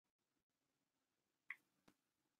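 Near silence broken by two faint, short clicks about a second and a half in, the second following closely.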